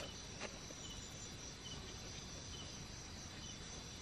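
Faint night ambience of crickets and other insects: a steady high-pitched drone with a few short, high chirps scattered through it.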